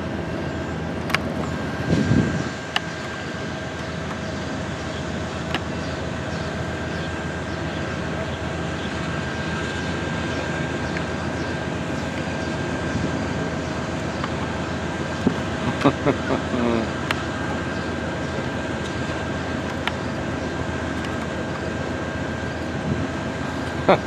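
Steady hum with two held tones from the standing Amtrak California Zephyr, idling at the station platform. There is a low thump about two seconds in, and faint voices about two-thirds of the way through.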